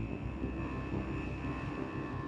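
Dark ambient noise soundtrack: a low rumbling drone with a steady high tone held above it.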